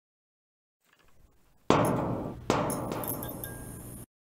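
Intro sting sound effect: a faint swell, then two heavy impact hits under a second apart, each ringing out and fading, with a glassy high shimmer after the second. It cuts off suddenly at the end.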